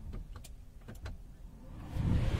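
A few faint clicks over a low hum in a Tata Harrier's cabin as the ignition is switched on and the instrument cluster powers up.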